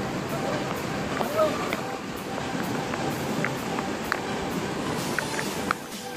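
Steady rush of fast-flowing floodwater in a swollen river around a man wading chest-deep through it.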